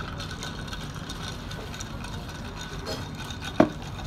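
Steady low hum of restaurant room noise with faint clatter, broken by a single sharp knock about three and a half seconds in.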